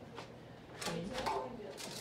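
Quiet shop interior with voices talking in the background from about a second in, and a few light clicks and knocks.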